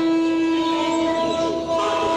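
Loud sustained electronic drone of several steady held tones sounding together like a chord, with a warbling layer underneath, produced live through effects pedals and an amplifier. The drone dips briefly and shifts slightly in pitch near the end.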